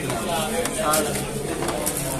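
Indistinct conversation: people's voices talking, with no other clear sound standing out.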